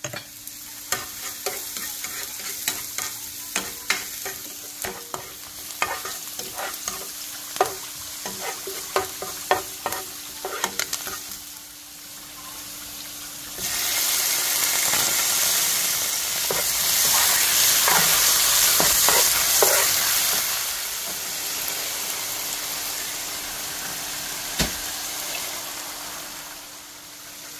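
Chopped garlic sizzling in oil in a nonstick frying pan, with many small taps and pops as it is stirred. About fourteen seconds in, raw chicken pieces go into the hot pan and the sizzle jumps much louder, then eases off after several seconds; one sharp knock near the end.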